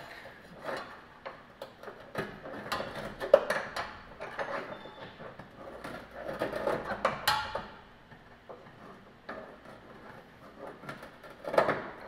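Irregular metallic clicks, taps and knocks of a hand tool working a steel rear leaf-spring shackle bolt, with the loudest knocks about three seconds in and again around seven seconds.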